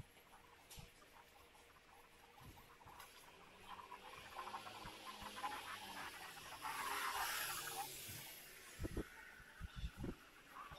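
Faint city street ambience heard while walking along a pavement. A soft swell of noise peaks about seven seconds in, and a few short, low thumps come near the end.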